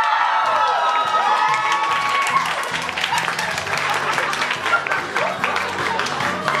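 A pop song with a sung vocal plays while an audience claps and cheers along; the clapping picks up from about halfway through.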